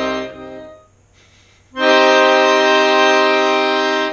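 Piano accordion playing two long held chords: the first fades out within the first second, then after a short gap a second chord sounds from just under two seconds in.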